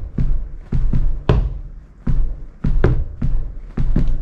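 Sneaker heels and toes tapping a rug-covered floor in a steady drum-groove pattern: deep heel thuds alternating with lighter toe taps, about two hits a second.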